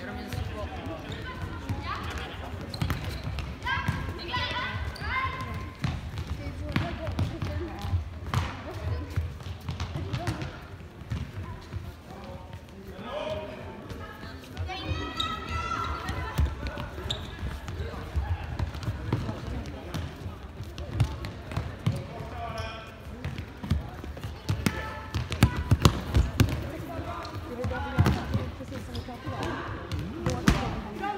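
An indoor football being kicked and bouncing on the hard floor of a large sports hall, with repeated knocks throughout and a run of louder ones about 25 seconds in. Players' voices shout out in bursts over the play, echoing in the hall.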